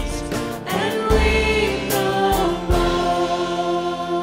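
Worship song: a man and a woman singing together to electric keyboard accompaniment with deep bass notes. Near the end they settle on a long held note.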